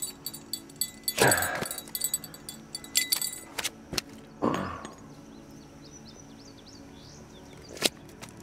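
Hand-unhooking a freshwater drum: quick clicks and rattles of hook, line and tackle with two short rustling swishes, then a quieter stretch with faint high chirps.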